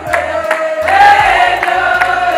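A group of women singing together, a held, wavering melody over a regular beat.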